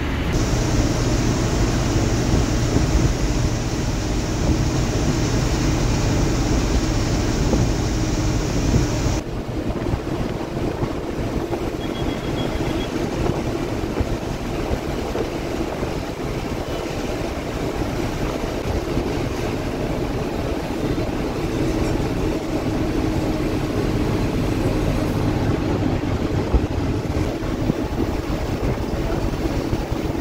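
Steady engine drone and road noise heard from inside a bus cabin while it is driven. A high hiss runs for the first nine seconds or so and then stops suddenly.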